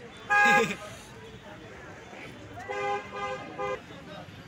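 Vehicle horns honking in the street: one short loud honk about half a second in, then a longer honk broken into about three beeps near the end.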